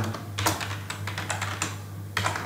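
Typing on a computer keyboard: a quick run of key clicks as a word is typed, starting about half a second in, over a steady low hum.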